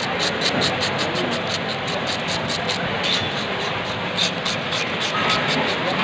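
A fish scaler scraping the scales off a black pomfret on a wet wooden chopping block, in quick rhythmic strokes at about five a second, over a steady din of market noise.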